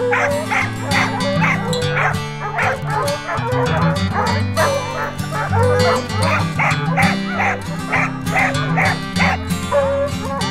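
Bear hounds barking over and over, about two barks a second, with background music underneath.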